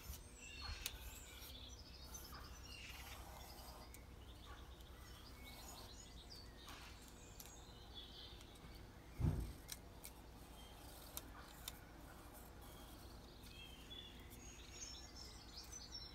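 Faint birdsong, scattered short chirps, over a low steady background hum, with a single dull thump about nine seconds in.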